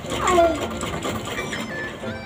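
Black hand-operated household sewing machine running as fabric is stitched. A louder sound falling in pitch comes near the start, over background music.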